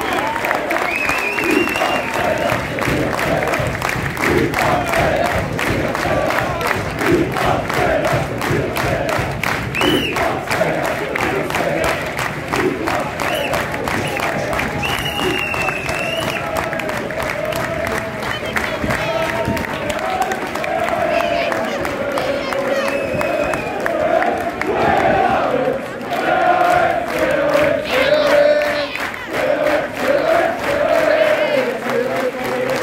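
Football supporters singing a chant together and clapping in a stadium stand, celebrating a win; the singing gets louder over the last several seconds.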